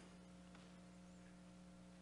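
Near silence, with a faint steady electrical hum.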